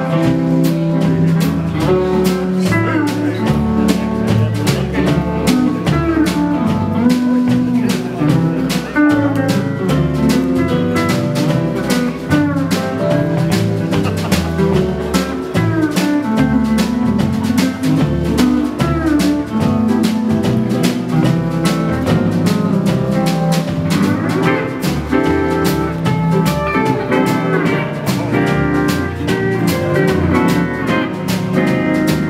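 Fender lap steel guitar playing a swing melody with sliding notes, over a band of drums keeping a steady beat, bass, rhythm guitar and piano.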